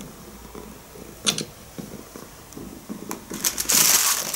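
Domestic cat purring softly, low and uneven. There is one sharp click about a second in, and a burst of rustling near the end.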